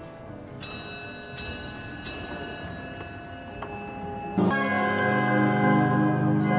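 Music: three struck bell-like tones ring on and overlap. About four and a half seconds in, louder sustained chords from a church pipe organ come in.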